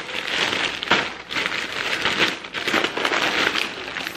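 Plastic shopping bag rustling and crinkling in irregular bursts as groceries are pulled out of it.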